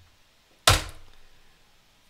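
A single sharp click of a computer keyboard key being struck, about two-thirds of a second in, with a short fading tail.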